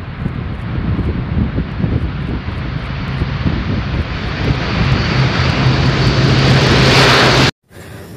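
Four-engine turboprop military transport plane, an Airbus A400M, running at full power while taking off from a dirt strip, growing steadily louder with a steady low hum coming through. The sound cuts off suddenly near the end.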